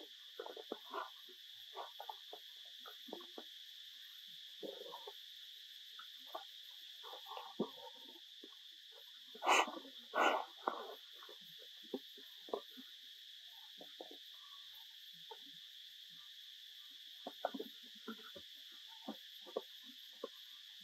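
A steady high-pitched drone of insects runs throughout, with short dry crackles of fallen leaves being rustled, and two louder sounds in quick succession about ten seconds in.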